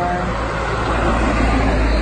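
A car driving past on the road, its tyre and engine noise swelling as it comes close and loudest from about a second in.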